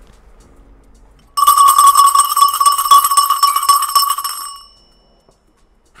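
A bell ringing with rapid repeated strikes for about three seconds. It starts about a second and a half in and then fades out.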